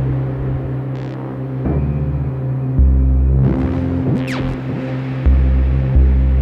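Dark ambient electronic music from an Elektron Digitone FM synthesizer played through a stereo reverb pedal. A sustained chord drone holds throughout while deep bass notes come and go, and a falling pitch sweep cuts through about two-thirds of the way in.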